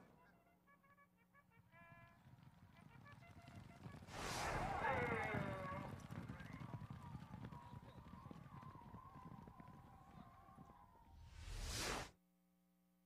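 Broadcast sound effects: about four seconds in, a loud horse whinny falling in pitch over a low rumble, and a whoosh near the end.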